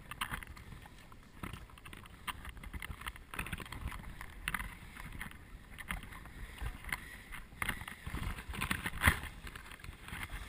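Wind rumbling on the microphone under scattered clicks and knocks of the fly reel and gear being handled, with light splashing as a trout is brought to the landing net in shallow water. A sharp knock about nine seconds in is the loudest sound.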